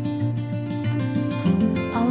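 Music: an acoustic guitar playing the song's accompaniment between sung lines, moving to a new chord about one and a half seconds in.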